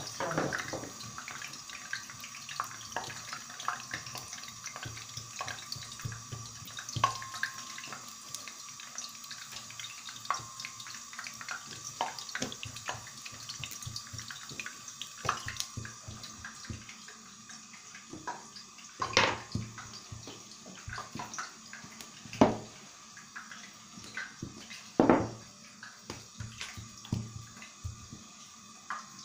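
Bishi, a round of yeast dough, frying in hot oil in a pan on a gas flame that has been turned up: a steady sizzle with constant small crackles and spitting, and three louder pops in the second half.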